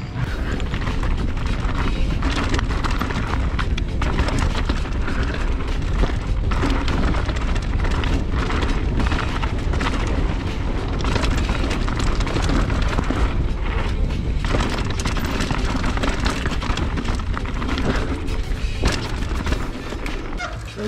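Wind rushing over the microphone of a bike-mounted action camera, with the low rumble and steady rattling knocks of a Polygon Siskiu N9 mountain bike rolling fast down a dirt trail.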